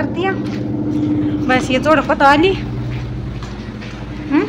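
A woman speaking in short bursts over a steady low mechanical drone, like a motor running, that grows a little louder in the middle and then fades.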